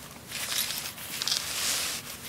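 Soft rustling and scraping of a folding solar panel's black fabric cover as it is handled and unfolded by hand.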